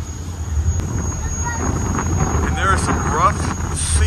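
Car ferry under way in choppy water: a steady low rumble of the vessel's engines mixed with wind buffeting the microphone.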